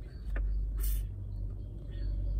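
Low, steady rumble of a car idling, heard inside the cabin, with a short hiss about a second in.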